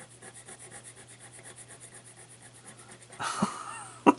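A small metal scratch-off tool scraping rapidly back and forth over the latex coating of a lottery ticket, in even strokes about nine a second. A louder burst of breath comes near the end.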